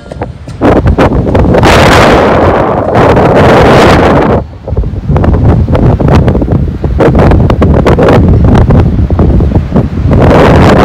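Strong wind buffeting the microphone in loud gusts, with a brief lull about four and a half seconds in.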